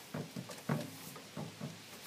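Braided rope being pulled through a hitch and dragged over a PVC pipe: a series of soft, irregular scuffs and rustles.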